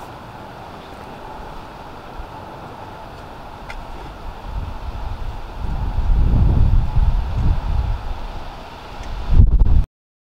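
Wind buffeting the microphone outdoors: a low, uneven rumble that builds about halfway through, gusts hardest just before the end, then cuts off abruptly.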